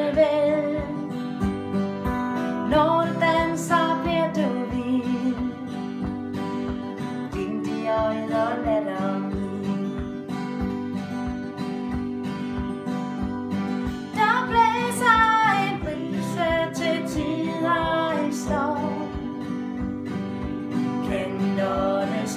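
Two steel-string acoustic guitars strummed in a steady rhythm, with sung vocal phrases over them.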